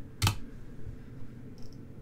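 A single sharp computer-keyboard keystroke about a quarter second in, as a selected block of text is deleted, then a faint click near the end over quiet room tone.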